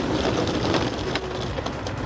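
Steady city street noise with a low rumble of road traffic.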